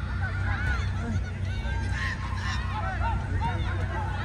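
Many children's voices calling and shouting across a football pitch in short, overlapping cries, over a steady low rumble.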